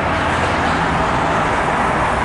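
Steady, loud road-traffic noise: a continuous wash of passing vehicles with a low rumble underneath.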